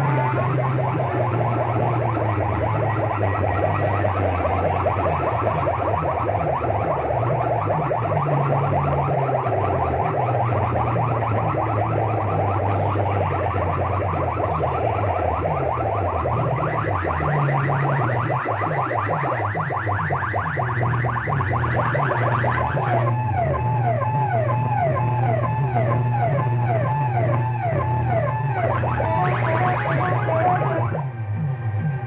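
Banks of horn loudspeakers on competing sound-system rigs blasting electronic music and siren-like warbling effects over a heavy, steady bass. About two-thirds of the way through, the effects change to fast, repeating up-and-down sweeps.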